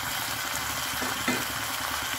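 Chicken masala frying in an aluminium kadai: a steady sizzle, with a couple of faint scrapes of the spatula stirring it.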